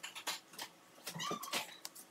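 Faint scattered clicks and taps from painted crown moulding being handled against the ceiling and marked with a pencil, with a short high squeak a little over a second in.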